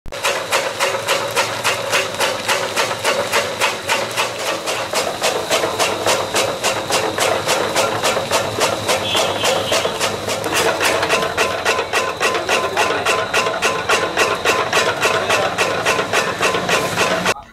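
Belt-driven electric chaff cutter chopping green grass and straw: its flywheel blades slice the fed fodder in a rapid, even run of sharp chopping strikes over the steady hum of the running machine.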